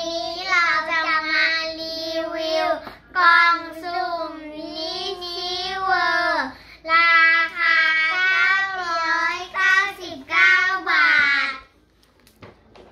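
A child singing a song in a high voice, holding long notes in several phrases with short breaks between them, ending just before the end.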